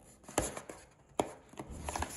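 Cardboard box handled and opened by hand: a few sharp taps and clicks as the lid flap is worked loose, the two loudest about half a second and a second in.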